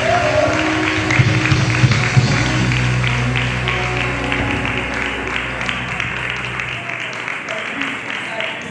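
The last chord of the band's accompaniment is held and then cuts off about seven seconds in, under steady hand clapping from the choir and congregation at the end of a gospel song.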